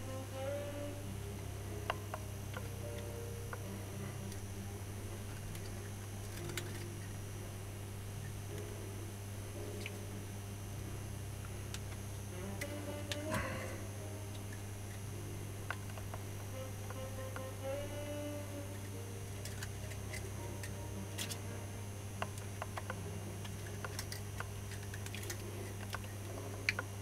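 Steady electrical hum with scattered small clicks and taps as copper magnet wire is wound by hand onto an angle-grinder armature; short, faint tonal snatches come and go.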